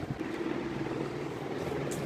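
A steady low hum at a held pitch, a motor-like drone, with a few faint clicks near the end.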